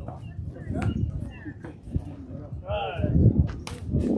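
Ambience of an outdoor softball game: steady low wind rumble on the microphone, with a player's short call about three seconds in. Scattered clicks run through it, the loudest a single sharp crack near the end.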